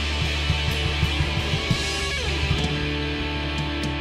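Live band instrumental passage: electric guitar, bass guitar and drum kit playing together with no vocals, a note sliding down in pitch about halfway through.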